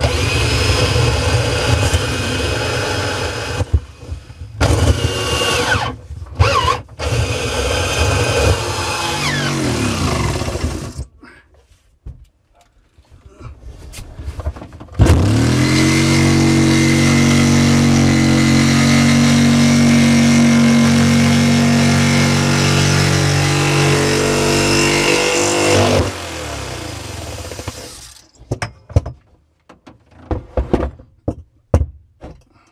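Electric drill boring a pilot hole through a camper's wall panel in several short bursts, then spinning down. After a pause of a few seconds, the drill runs at a steady speed driving a hole saw through the panel for about ten seconds, then winds down and stops.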